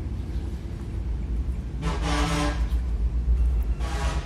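Steady low rumble of road traffic. About two seconds in there is a brief, steady-pitched blare, like a passing vehicle's horn or engine.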